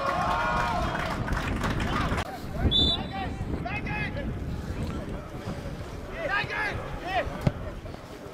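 Scattered shouts and calls of voices across a football pitch, over a steady low wind rumble on the microphone, with one sharp click near the end.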